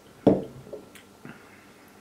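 A short, loud sip of hard seltzer from a glass about a quarter second in, followed by a few fainter wet mouth sounds.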